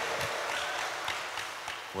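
Audience applause in a large hall, a crowd's hands clapping as a spread-out wash of noise that gradually dies away.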